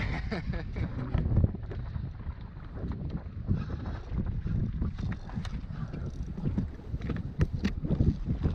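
Wind buffeting the camera microphone on an open boat, a gusty low rumble, with two sharp clicks near the end.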